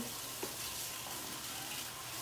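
Sautéed vegetables and chicken sizzling in a hot pan as they are folded together with a wooden spoon, a steady hiss with one light knock of the spoon about half a second in.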